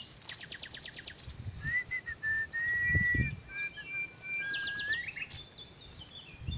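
Wild birds calling: a quick run of short high chirps, then a long steady whistled note held for about three seconds, then another quick run of chirps. A dull low thud about halfway through.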